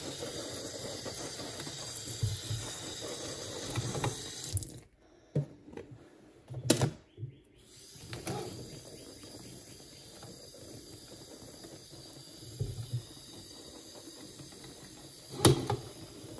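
Kitchen tap water running and splashing onto wet clothes in a stainless-steel sink. The flow drops away about five seconds in, with a few sharp knocks, then runs steadily again; a sharp knock comes near the end.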